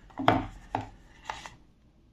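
Thin clear plastic pots knocking and rubbing together as a small potted orchid is pushed down into a larger square plastic pot: one sharp knock about a quarter second in, then two lighter clicks.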